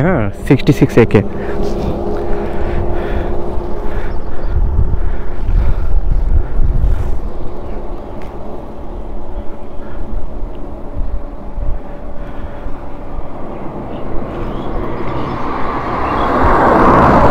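Roadside traffic: a steady engine hum with an uneven low rumble of wind on the microphone, and a car approaching and passing near the end, louder as it comes.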